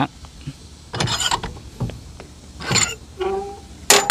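Steel adjustment pin being worked out of a pivoting adjustable trailer hitch: scattered metal-on-metal scrapes and rattles, with a sharp metallic clink near the end.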